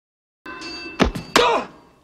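Movie fight sound effects: two heavy punch-like thuds about a third of a second apart over a faint held musical tone, fading quickly.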